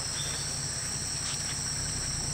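A steady high-pitched insect chorus, crickets or similar, holding a constant pitch throughout, over a low steady rumble.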